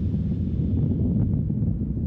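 A steady, deep rumble with its energy low down and little at the top.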